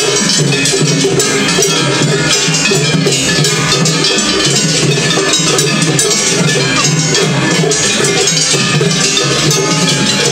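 Gion-bayashi festival float music at a tatakiai, where floats play against each other: hand gongs (kane) clanging in a fast, continuous rhythm over taiko drums. It is loud and dense, with no break.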